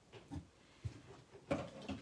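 Small craft scissors snipping the ends off a linen ribbon bow, with a few soft snips and handling noises and a sharper click about a second and a half in.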